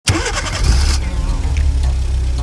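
Car engine starting and running, used as an intro sound effect: a loud, bright burst in the first second, then the engine running steadily at a low pitch.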